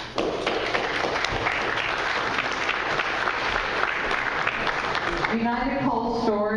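Audience applauding. The clapping dies away a little after five seconds in, and a person's voice takes over.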